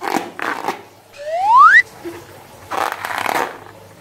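Hands squeezing a slime-filled rubber balloon, giving wet squishing and crackling noises. About a second in, a loud rising whistle climbs for about half a second and cuts off suddenly. More squishing follows.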